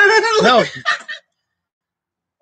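A man laughing with a wavering, up-and-down voice and saying "no" over the first second, then the sound cuts out to dead silence.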